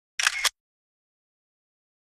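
A camera shutter sound effect: a short double click, two snaps about a quarter second apart, with silence around it.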